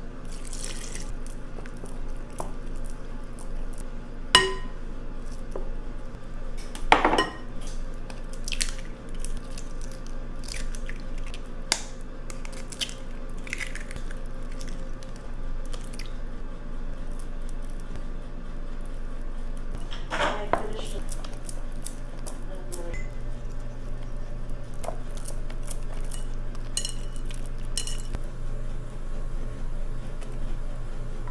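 Kitchen clatter of a glass mixing bowl, a small glass cup and utensils as banana bread batter ingredients are added, with scattered clinks and a few sharp knocks over a faint steady low hum.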